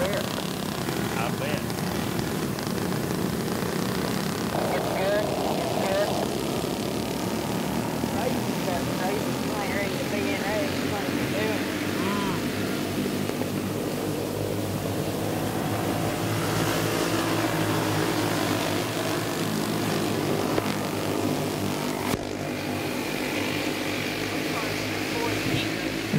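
Racing go-karts' small flathead engines running hard, several overlapping, their pitch rising and falling as the karts accelerate and lift through the turns. The sound changes abruptly about 22 seconds in.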